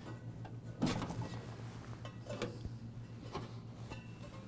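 Light clicks, knocks and rubbing of hands unplugging the electrical connector from a walk-in cooler evaporator's PSC fan motor assembly, the clearest click about a second in, over a faint steady hum.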